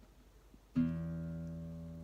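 Nylon-string classical guitar plucked once with a free stroke about three-quarters of a second in. The notes ring on and slowly fade.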